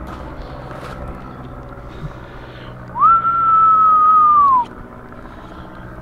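A person whistling one long note about three seconds in: it rises quickly, holds for about a second and a half, and slides down at the end.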